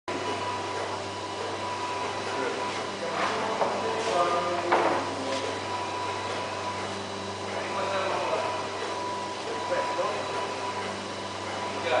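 Fir-wood panels being handled: knocks and scrapes as the boards are lifted and set on the table, one sharper knock about five seconds in. A steady machine hum with a thin high whine runs underneath, and voices talk at times.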